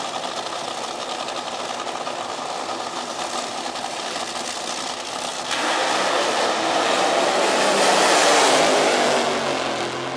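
Dragster engines running at the start line; about five and a half seconds in, one car opens up into a burnout, its engine revving hard with the rear tyres spinning, the sound swelling loudest around eight seconds and easing near the end.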